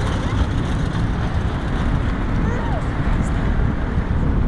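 Steady, loud low rumble of outdoor noise, with faint voices now and then.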